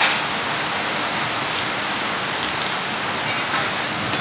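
Water running steadily and splashing onto a wet work surface, as from a tap during the cleaning of lobsters.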